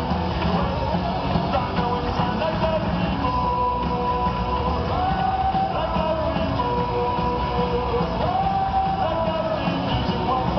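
Punk rock band playing live through a PA, with distorted electric guitars, bass and drums, heard from the audience. Several long held notes run over the top.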